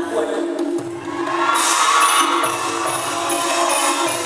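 Thai piphat ensemble playing live for a likay show: a sustained melody line over tuned percussion. Small high cymbal strokes repeat at a steady beat and get louder about a second and a half in.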